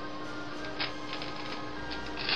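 Kitchen knife cutting down through a block of cheddar and scraping against a wooden chopping board, a few short scrapes over a steady background hum.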